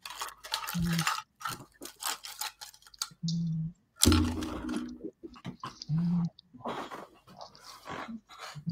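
Low snoring sound, three short snores about two and a half seconds apart, amid sharp clicks and clinks. Listeners took it for a dog snoring, but the person asked says it isn't their dog.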